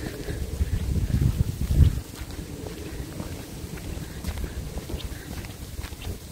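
Wind buffeting the microphone, an uneven low rumble that is strongest in the first two seconds and then eases.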